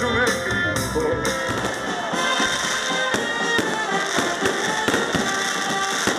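A live band with electric guitars playing, then from about two seconds in, fireworks crackling and banging in quick succession over continuing music.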